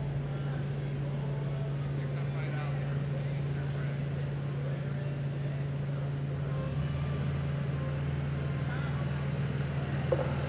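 A steady low hum at an even level, with faint, indistinct voices in the background.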